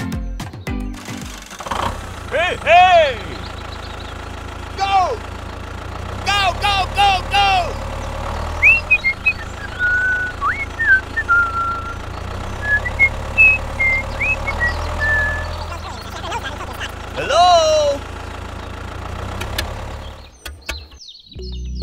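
Steady low drone of a tractor engine idling under music, with several bursts of squeaky rising-and-falling cartoon-like vocal sounds and, in the middle, a run of short whistle-like chirps.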